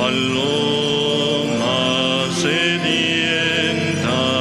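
Slow sung church hymn, long held notes over a steady sustained accompaniment.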